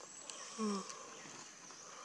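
A baby macaque gives one short call about half a second in, a brief note falling slightly in pitch.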